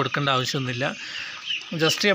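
A flock of young broiler chicks peeping, short high chirps that come through most clearly in a lull about a second in, under a man's voice.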